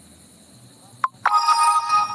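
A short electronic blip about a second in, then a loud electronic chime of several held tones, like a phone ringtone, starting about a second and a quarter in.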